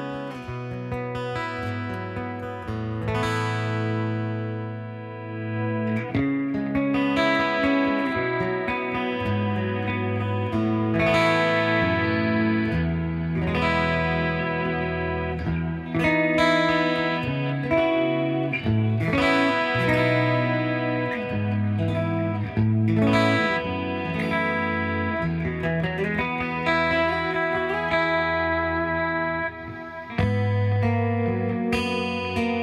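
Ernie Ball Music Man Majesty electric guitar played clean through an effects chain, with ringing chords and single notes that sustain and overlap, new notes picked every second or so. It is a demonstration of the guitar's clean tone with its DiMarzio humbuckers, not coil-split.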